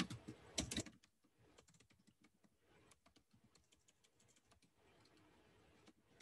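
Faint, quick, irregular clicking of computer keyboard keys being typed on, a little louder in the first second.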